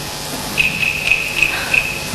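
Cricket chirping: a thin, steady high trill with brighter chirps about three times a second.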